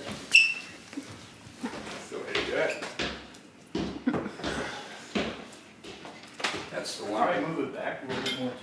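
Indistinct voices talking in a room, with a short, sharp metallic ping about a third of a second in and scattered knocks and bumps.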